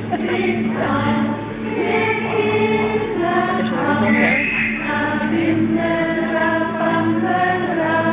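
A crowd of voices singing a song together, with held notes moving from pitch to pitch in a melody.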